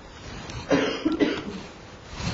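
A man coughing, a short run of a few loud, harsh coughs starting less than a second in.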